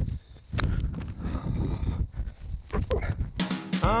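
A golf ball chipped off grass with a wedge: one sharp click about half a second in, over wind noise on the microphone. Near the end a music clip cuts in, with a voice saying "I'm so bad at chipping" over it.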